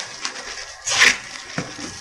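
Plastic wrap and paper packing crinkling and rustling as a plastic-wrapped metal shock spacer is pulled out of a cardboard box, with one louder crackle about a second in.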